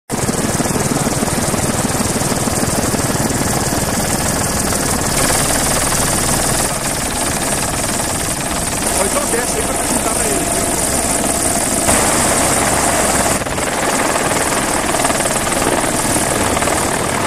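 Helicopter in flight heard from on board: a loud, steady drone of engine and rotor. Its tone changes abruptly a few times.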